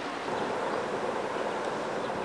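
A small fishing boat running out across open water: a steady rushing noise of its engine and the water.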